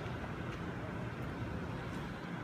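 A steady low hum under continuous outdoor background noise.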